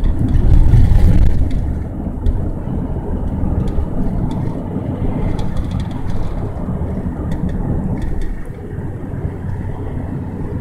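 Low road and wind rumble of a moving car, heard from inside. It is loudest for the first second or so, then eases to a steadier, slightly quieter rumble.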